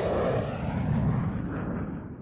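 Deep rumbling boom of a logo sound effect, its low rumble dying away and fading out.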